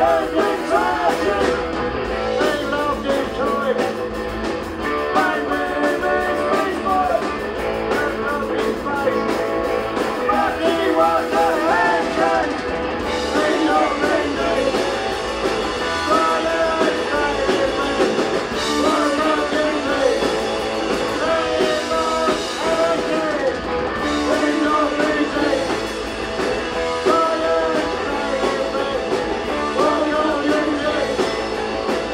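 Punk rock band playing live: electric guitars, bass and drums, with a man singing lead into a microphone.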